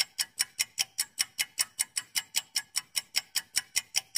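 Quiz answer-timer sound effect: a clock ticking evenly and quickly, about five ticks a second, counting down the time to answer.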